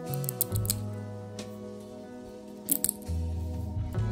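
Small sharp clicks and snaps of tiny 3D-printed resin model wheels being broken off their support pins: a cluster of several in the first second and about three more a little before three seconds in, over acoustic guitar background music.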